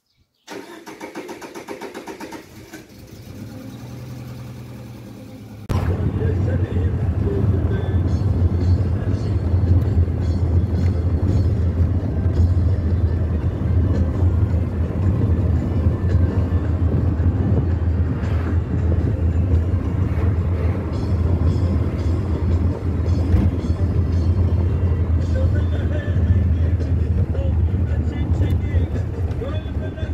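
A Peugeot 405 sedan's engine starting and running. From about six seconds in, the steady low rumble of engine and road noise is heard inside the cabin as the car drives.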